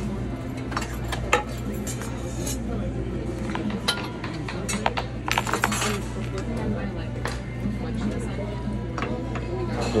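Metal serving tongs and spoons clinking against stainless-steel salad-bar pans in scattered light clicks, thickest about halfway through, over a steady low hum.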